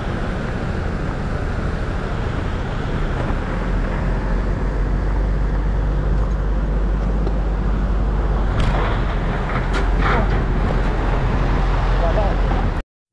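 Motorcycle running on the move, a steady dense noise with a strong low rumble, with a few sharp clicks or knocks about nine to ten seconds in.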